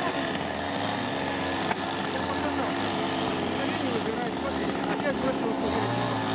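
A motor running steadily in the background, a constant low hum, with soft voices over it.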